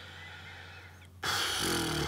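A man's sharp, loud in-breath about a second in, taken just before speaking, after a faint quiet stretch.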